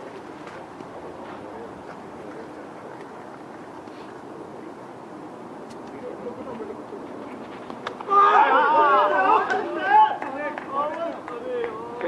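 Faint background chatter at first; about eight seconds in, several people start shouting loudly over one another during play.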